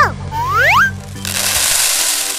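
Cartoon sound effects over children's background music: a whistle-like pitch glide falls, then rises again. From just over a second in comes a hissing, rushing noise as the animated balls spill.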